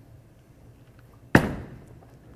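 A single sharp, loud bowling-alley impact about a second and a quarter in, ringing briefly as it fades, over a low steady alley hum.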